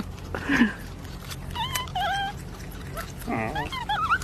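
An animal giving several short, high calls with a wavering pitch, a few in quick succession and more near the end.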